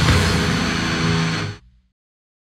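Brutal death metal recording: a held guitar chord rings out, then the music cuts off abruptly about a second and a half in, at the end of an album track.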